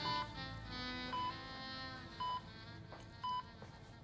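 Patient heart monitor beeping steadily, a short high beep about once a second, four times, over soft sustained background music.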